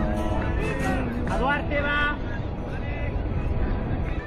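Young children shouting and calling out during a youth football match, in short high-pitched cries that rise and fall, over background music.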